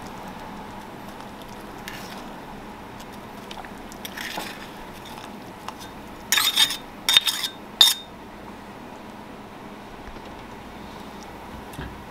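A metal spoon scraping and clinking against a stainless steel measuring cup and pot while brown sugar is spooned in: a faint scrape about four seconds in, then a quick run of four or five sharp clinks between about six and eight seconds in, over a steady low background hiss.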